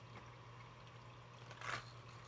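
Quiet room tone with a faint steady hum; near the end a brief rustle as the plastic lure box is handled.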